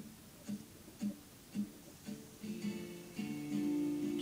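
Guitar intro: single plucked notes about every half second, then ringing, held notes joining in from about two and a half seconds in and growing louder.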